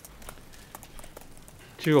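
Sparse, irregular camera shutter clicks from press photographers, faint under the low hum of the room; a man starts speaking near the end.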